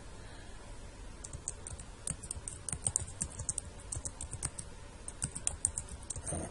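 Computer keyboard typing: a quick run of key clicks starting about a second in, thinning out briefly a little after the middle before a few more keystrokes near the end.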